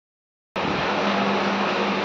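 Silence, then about half a second in a steady, even hiss with a low hum under it starts abruptly and holds level.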